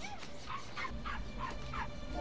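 A small animal whimpering: a quick run of short, faint, high calls, several a second.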